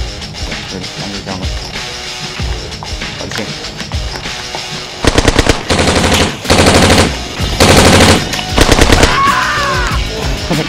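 Airsoft guns firing rapid full-auto bursts, about five of them from halfway through, over background music.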